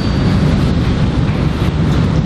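Steady, loud low rumble with hiss above it, unbroken by any distinct event: the background noise of the room as the recording picks it up.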